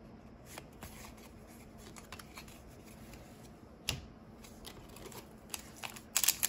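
Yu-Gi-Oh trading cards being flipped through by hand, making faint soft slides and clicks of card against card, with one sharper click about four seconds in.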